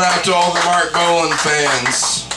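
Voices talking in a small room between band sets, with clinking and clatter.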